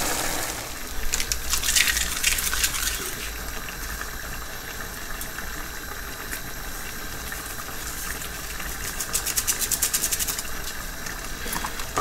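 Chilli con carne frying and sizzling in a pot while a spoon stirs and scrapes through the mince, tomatoes and baked beans, with scattered clicks early on and a fast run of clicks about nine seconds in.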